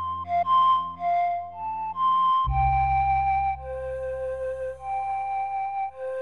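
Slow lullaby played on flute over a soft guitar accompaniment. The flute moves through several short notes, then holds longer notes over a low chord that comes in about halfway through.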